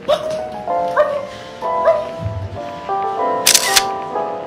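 A camera shutter sound about three and a half seconds in, over background music, with a woman's voice calling out three times about a second apart to catch the dog's attention.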